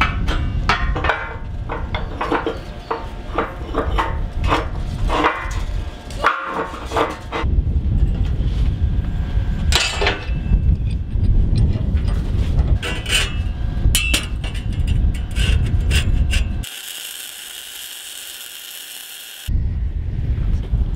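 Irregular metallic knocks and clicks of tools and clamps being handled on steel plate, over a steady low rumble. Near the end this gives way to a steady hiss for about three seconds.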